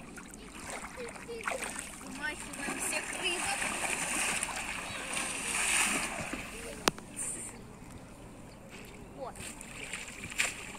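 A person splashing in waist-deep water, dropping in and thrashing. The splashing builds through the middle and is loudest about two-thirds of the way in. It is followed right after by a single sharp click.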